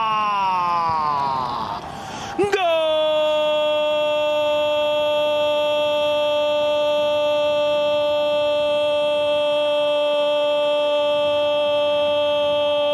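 Sports commentator's goal call: a long shouted "golazo" falling in pitch, then, after a brief break about two seconds in, a single drawn-out "gooool" held at a steady pitch.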